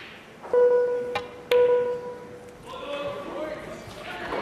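Snooker shot-clock warning beeps: two steady electronic tones about a second apart, the first half a second in, each held for well under a second. A sharp click of cue and balls falls between and with them as the shot is played against the clock.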